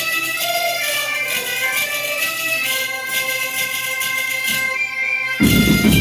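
Galician folk ensemble playing: gaita bagpipes holding steady notes over jingling tambourines (pandeiretas). About five seconds in, the big bass drums (bombos) come in loudly and fill the low end.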